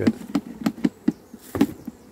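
Honeybees buzzing inside a plastic tub that is being shaken with powdered sugar in a varroa sugar roll. The buzz comes in short, sharp pulses about four to five times a second, in time with the shaking.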